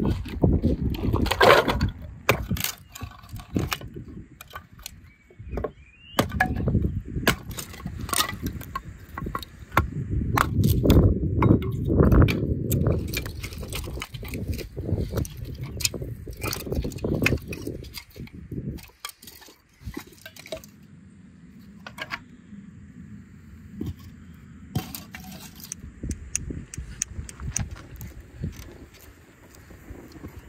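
Split firewood sticks knocking and clattering against each other as they are dropped and laid out on gravel, in many short irregular knocks. A heavy low rumble runs under the louder middle stretch, and the knocks thin out to a few scattered clicks near the end.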